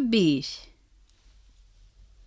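A voice finishing a drawn-out word with a falling pitch in the first half second, then quiet room tone with a low hum and a few faint clicks.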